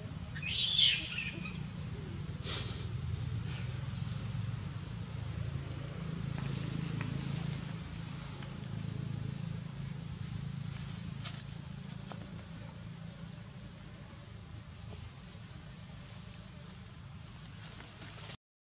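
A long-tailed macaque gives a short, shrill squeal about a second in and a briefer one around two and a half seconds, during rough play, over a steady low outdoor hum.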